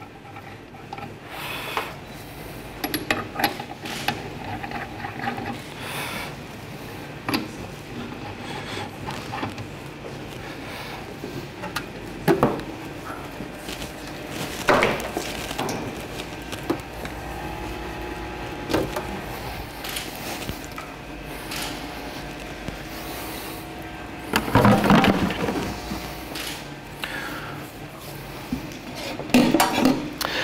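Scattered knocks, clicks and rubs of metal parts being handled, as tap handles are screwed back onto stainless beer faucets, with a louder cluster of clatter near the end.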